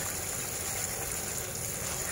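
Butter, margarine and brown sugar sizzling steadily in a nonstick frying pan as they melt, stirred with a wooden spatula.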